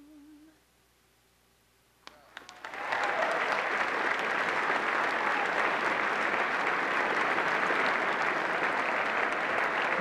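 A woman's voice holds the last sung note with vibrato and stops about half a second in. After a short hush, a few scattered claps come about two seconds in and swell within a second into steady, loud applause from a large audience.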